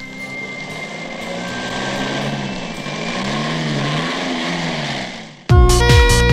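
Open-top jeep's engine revving and pulling away, its note rising and falling several times and growing louder, over faint background music. About five and a half seconds in it cuts off and loud electronic music with a beat starts abruptly.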